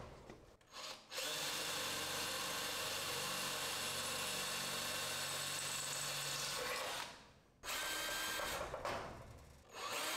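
Power drill boring holes in sheet metal for a garage door lock's mounting bracket: one long run of about six seconds, a brief stop, then a shorter run that trails off near the end.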